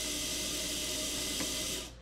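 A VEX V5 motor runs steadily, driving the chair carriage down a threaded screw shaft with a whirring hiss. Near the end there is a faint click and the motor stops: it is cut off as the bottom limit switch is pressed.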